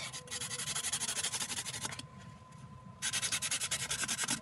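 Felt-tip marker scribbling on a cardboard toilet paper roll: quick back-and-forth scratchy strokes, loud against the cardboard, stopping for about a second halfway and then starting again.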